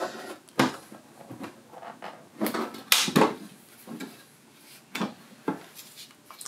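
Hard plastic clicks and knocks as a battery is unlatched and lifted out of its mount on a robot rover's plastic deck. The sharpest cluster of knocks comes about halfway through.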